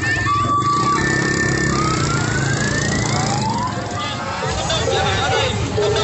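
An electronic siren sound: two steady tones alternating high-low, then about two seconds in a pair of rising sweeps in pitch. Crowd chatter takes over in the second half.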